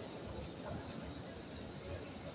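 Low ambience of a large indoor sports hall: a steady low rumble with faint, indistinct background voices.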